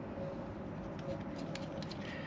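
Steady low background noise with a few faint, short ticks and no clear event.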